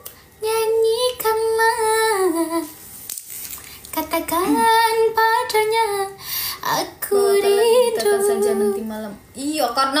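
Female voice singing a cappella, with no backing music: held notes bent with small melodic runs, in phrases of about two seconds with short breaths between.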